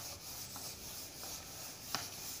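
A duster scrubbing back and forth over a whiteboard, wiping off marker writing, with a few sharp taps as it strikes the board, the loudest at the start and near the end.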